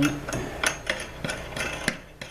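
A steel lathe arbor shaft being worked by hand in a galvanized pipe fitting, clicking and knocking as it shifts in the V notches ground into the fitting's rim. The clicks are light and irregular, about seven in two seconds.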